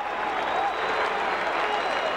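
Large stadium crowd clapping and shouting, a steady wash of noise from the stands.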